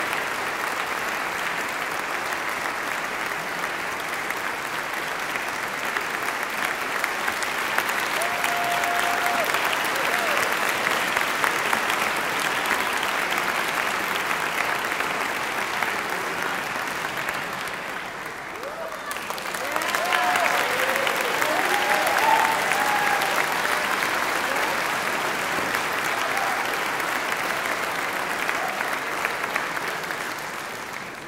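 Audience applauding steadily, with a short lull about two-thirds of the way through before the clapping swells again, and a few voices calling out over it.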